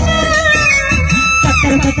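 A live band plays an instrumental passage of a song, loud through stage loudspeakers, over a steady beat. One high note is held for about a second in the middle.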